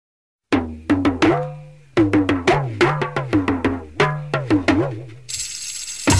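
Rock song intro in which drums and a bass guitar line start about half a second in, played as sharp ringing drum strokes in a steady rhythm. A cymbal wash comes in near the end.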